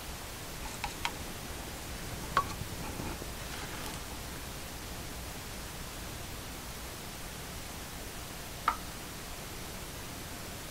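Quiet room tone with a steady hiss, broken by a few faint taps and clicks from a small plastic paint cup being handled: a pair about a second in, one at about two and a half seconds and a sharper one near the end.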